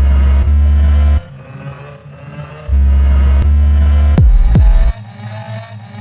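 Electronic intro music with deep bass notes held for a second or two at a time, then sharp bass hits that drop quickly in pitch: two close together past the middle and one more near the end.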